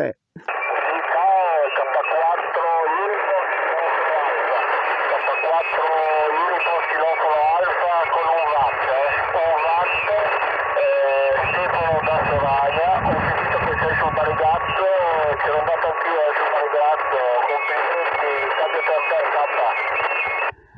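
Shortwave single-sideband voice from a Yaesu FT-817 receiver's speaker, thin and narrow-band, with several stations talking over one another and a steady whistle running under them. It is the crowded interference (QRM) on a busy band during a pileup.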